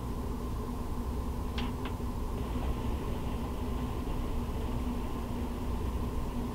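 Steady low machine hum with a faint constant tone running through it, and two faint ticks a little over a second and a half in.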